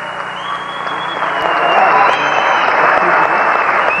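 Audience applauding, growing louder after about a second and a half.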